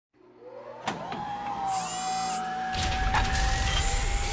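Electronic title sound effect: a whine that glides up and then holds one steady tone, with a sharp click about a second in, a short high hiss near two seconds, and a low rumble coming in near three seconds.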